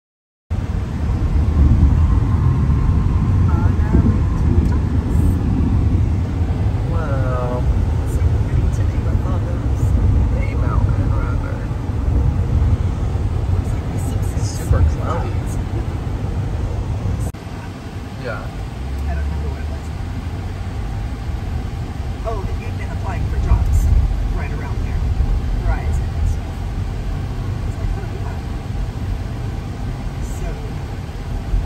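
Steady low road and engine rumble inside the cabin of a moving Hyundai Santa Fe, a little quieter in the second half, with faint snatches of voices now and then.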